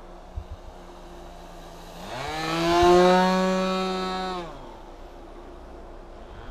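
Engine of a small propeller-driven aircraft flying overhead, a buzzing drone that rises slightly in pitch and swells loud about two seconds in as it passes close. About four and a half seconds in it drops in pitch and fades back to a distant hum.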